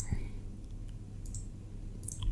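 A few faint computer mouse clicks: one at the start and a quick pair about a second in, over a low steady hum.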